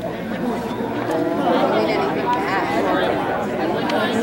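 A crowd of high-school students all talking among themselves at once: a steady many-voiced chatter with no single voice standing out.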